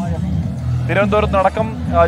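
Voices talking over background music and a steady low rumble.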